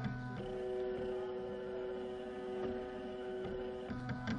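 Stepper motors in a Palstar HF Auto antenna tuner whining steadily as they drive the roller inductor and differential capacitor, the tuner searching automatically for the lowest SWR. The whine starts just after the beginning over a low hum and cuts off just before the end, as the tune finishes.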